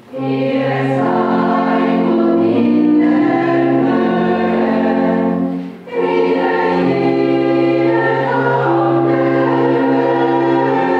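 A church choir singing a hymn in several held vocal parts over sustained organ chords, with a short pause between phrases about six seconds in.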